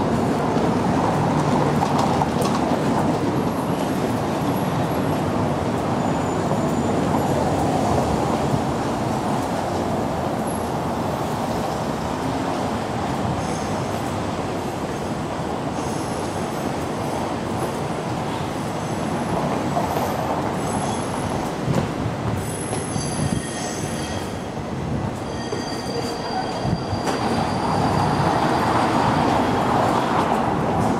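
A tram running past on its steel rails over steady street noise, with thin high wheel squeal coming and going through the middle and latter part.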